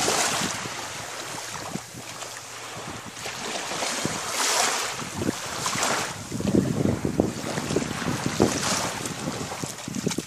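Small waves lapping at a sandy shore, with wind buffeting the microphone in slow gusts. A stretch of close, crackly water splashing comes about six to eight and a half seconds in.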